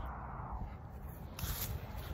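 A single sharp click, then steady low background noise.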